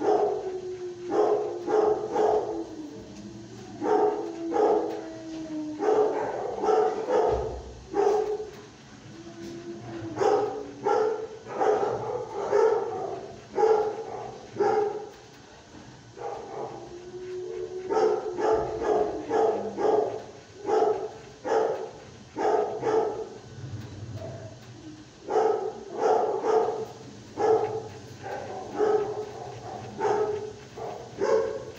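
Shelter dogs barking repeatedly in quick runs of barks with short pauses, with a few drawn-out sliding notes among them.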